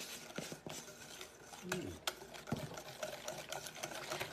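Metal wire whisk beating a runny filling in a glass mixing bowl: a rapid, irregular ticking of the wires against the glass.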